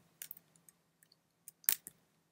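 A few sparse computer keyboard keystrokes, heard as short clicks: a faint pair shortly after the start and a louder pair near the end.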